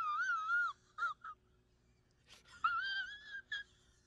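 A man crying in high-pitched, wavering wails. There are two drawn-out sobbing cries about two and a half seconds apart, each trailing off into short broken sobs.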